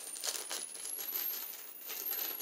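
Faint rustling and light clicking of empty product packaging being handled.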